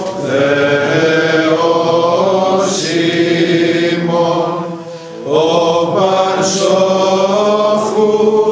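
A congregation of men and women chanting a Greek Orthodox hymn together, in long held notes, with a short break for breath about five seconds in.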